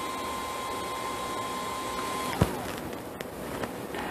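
Parrot Bebop 2 drone's internal cooling fan running with a steady whine that drops in pitch and dies away a little over two seconds in, with a sharp click, as the drone restarts itself during its firmware update.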